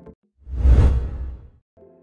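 A single whoosh transition sound effect, swelling in about half a second in and fading over about a second, with a deep low rumble under it.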